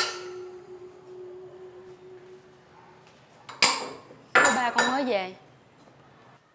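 Stainless steel pots clanking on a gas stove. A clank rings on in a steady tone that fades over about three seconds, then a sharp clank comes about three and a half seconds in and a cluster of ringing clatters a second later.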